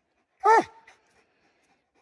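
Redbone coonhound giving a single tree bark about half a second in, its pitch dropping at the end: the hound is treed on a raccoon.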